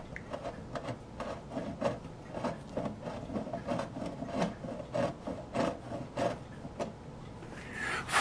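Hand-twisted bevelling tool scraping and cutting into a hole in a plastic model-ship deck, a run of short rasping strokes about two a second that stop near the end. The hole is being bevelled and widened because a part is too tight to go in.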